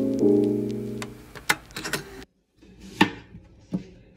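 Soft piano chords fading out, then, after a cut, a knife knocking twice on a wooden cutting board, about three-quarters of a second apart, as onions are cut.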